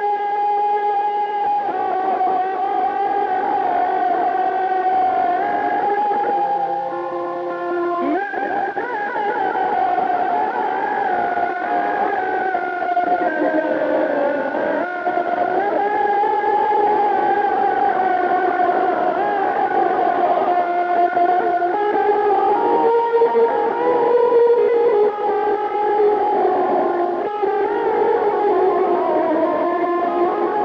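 Electric guitar playing Azerbaijani wedding music through effects: a singing lead melody of long held notes with sliding pitch bends, including a marked upward slide about eight seconds in.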